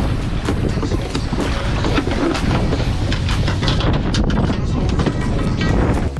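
A large yellowfin tuna splashing and thrashing as it is gaffed and hauled over the side of a small boat, with a quick string of knocks and slaps, over heavy wind noise on the microphone.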